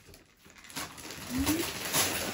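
Wrapping paper rustling and tearing as presents are unwrapped, with a short rising coo from a small child about one and a half seconds in.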